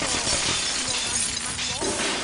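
Glass shattering in a continuous shower of breaking shards and crashes.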